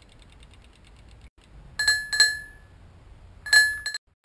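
A bicycle bell rung four times, as two quick pairs of bright single-pitched rings that each fade away. Before the bell, a freewheel ticks faintly and rapidly, about nine clicks a second, as the bike coasts.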